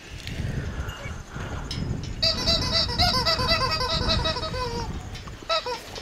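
A horse biting into and chewing a pear close up, a steady irregular crunching and chomping. From about two seconds in until nearly five, a quick run of repeated pitched calls, several a second, sounds over it.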